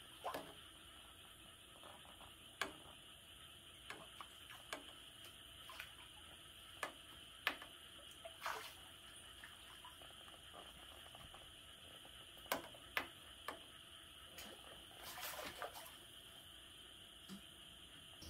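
Quiet night ambience: a steady high-pitched insect chirring, with scattered sharp clicks and small knocks from fishing gear being handled.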